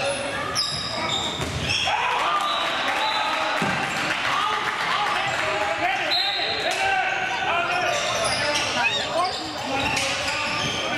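Sounds of indoor handball play in an echoing sports hall: the ball bouncing on the court floor, shoes squeaking in many short high chirps, and players calling out.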